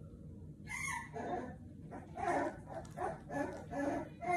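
A four-week-old American Bully puppy crying in a run of short, high yelps and whines, about two a second.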